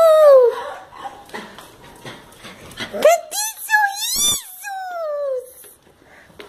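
A dog whining in long, high, drawn-out cries: one sliding down and fading just after the start, and another about three seconds in that rises, wavers and slides down over about two seconds.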